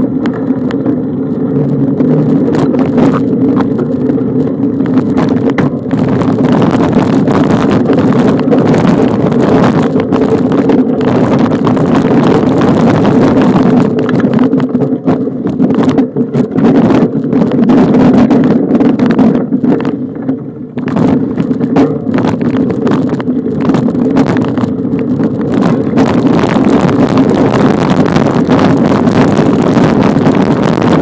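Steady loud rumble and wind buffeting on the microphone of a camera carried on a bicycle riding a dirt trail, with rattles and jolts from the rough ground.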